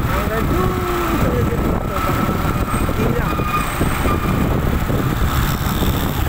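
Steady riding noise on a moving motorcycle: a continuous low rumble of engine, road and wind on the microphone.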